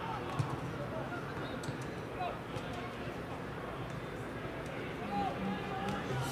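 Football pitch ambience: distant, unintelligible shouts from players and the small crowd over a steady background hum, with a few faint short knocks in the first couple of seconds.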